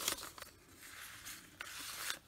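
Paper rustling as a folded lined paper insert in a handmade junk journal is handled and unfolded: a sharp crackle at the start, then a soft continuous rustle.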